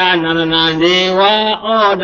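A Buddhist monk's voice chanting in long held, nearly level tones, with a short break near the end.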